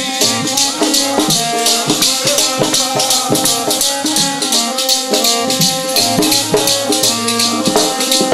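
Instrumental passage of Punjabi kirtan: a harmonium plays a melody in held, stepping notes over a hand-drum bass, with a fast, even jingling rattle of metal percussion.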